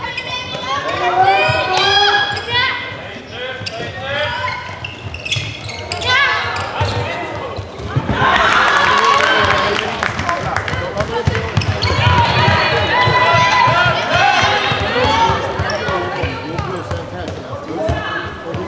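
Handball bouncing on a sports hall floor amid high-pitched shouts and calls from players and spectators. The voices grow denser and louder about eight seconds in.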